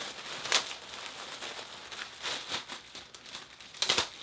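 Thin clear plastic bag around a folded t-shirt crinkling as hands pull it open. There are louder rustles about half a second in, a little past the middle, and just before the end.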